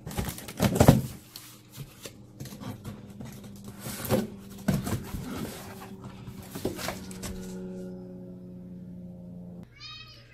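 Cardboard shipping box being opened by hand, with flaps lifted and cardboard scraping and knocking, loudest about a second in, with a few more knocks later. From about three seconds a steady low tone with overtones sounds under it, growing stronger in the last few seconds and then stopping just before the end.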